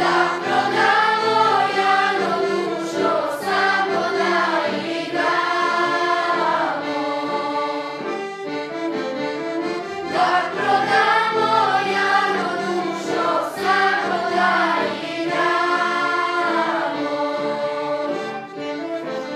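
Children's choir singing a melody with violin accompaniment, one phrase, a short break about eight seconds in, then the phrase repeated.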